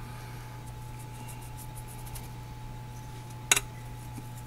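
Steady low hum with faint light ticks as granular garlic powder is shaken from a spice container over the pork, then one sharp click about three and a half seconds in.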